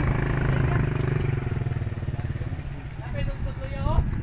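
An engine running steadily at idle, with voices over it near the end.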